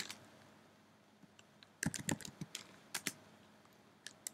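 Keystrokes on a computer keyboard: a quick run of typing that begins about two seconds in, after a near-quiet start.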